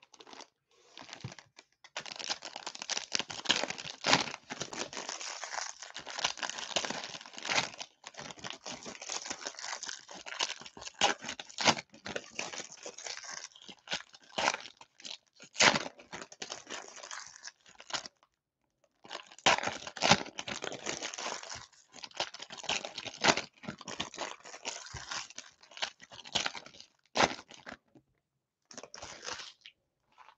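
Plastic trading-card pack wrappers being torn open and crinkled by hand, a near-continuous crackle with many sharp snaps, pausing briefly twice.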